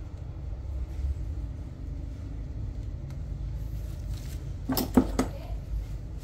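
Steady low rumble of background noise, with a quick cluster of three sharp knocks near the end, from cake-decorating tools being handled on the work surface.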